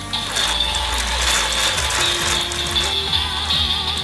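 Kamen Rider Build Driver toy belt with its crank lever being turned: a steady ratcheting gear sound under the belt's electronic transformation music.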